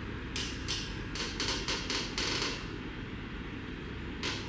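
A quick run of short creaks and rustles from the padded massage bed and clothing under a therapist's bare feet as she treads on a client's back, bunched between about a third of a second and two and a half seconds in.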